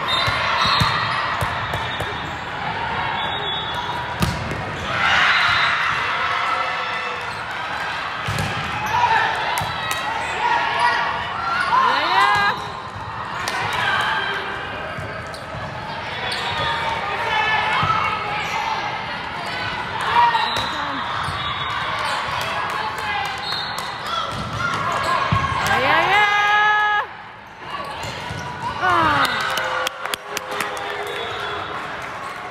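Indoor volleyball rally in a large hall: the ball being struck in sharp smacks, sneakers squeaking on the court in quick rising squeals, and players and spectators calling out throughout.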